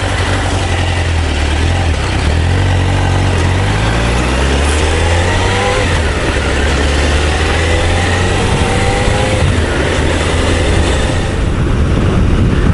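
Honda CBR1000F motorcycle's inline-four engine pulling away under acceleration, its pitch rising twice, about three seconds in and again about seven seconds in, with steady wind noise on the helmet-mounted microphone.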